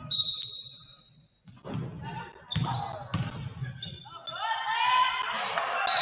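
Basketball bouncing a few times on a hardwood gym floor, with a short high whistle at the start and another near the end. Voices rise in the echoing gym over the last two seconds.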